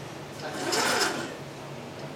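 Electric joint motors and gearboxes of a 7-degree-of-freedom robot arm whirring as the arm moves, over a steady low hum. The whir swells to a louder burst about half a second in and eases off again after about a second.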